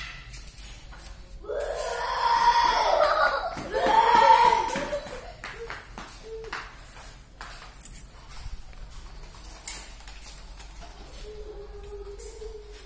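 A high-pitched voice calls out or squeals with wavering pitch for a few seconds starting about a second and a half in. After that, only light scattered clicks and knocks are heard in the room.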